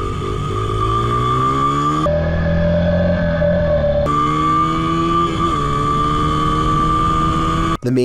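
Dirt bike engine accelerating, its pitch rising steadily as the bike speeds up, with a steady high tone running over it. The sound changes abruptly for a couple of seconds in the middle.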